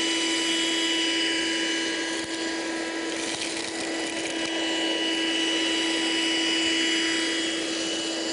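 Hoover Handy Plus 6-volt cordless handheld vacuum cleaner running with a steady, even-pitched motor hum and hiss as it picks up dry split peas and lentils from a rug.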